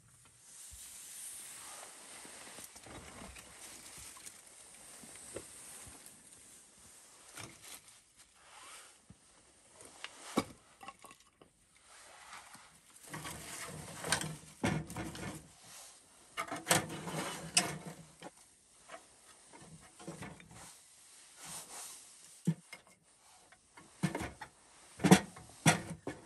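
Dry kindling sticks being handled and laid into a small wood-burning stove: irregular wooden knocks, cracks and clatter, thickest in the second half. Before that, a steady hiss with only a few scattered clicks.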